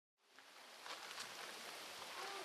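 Dead silence, then about a quarter-second in a faint, even outdoor background hiss fades up and holds.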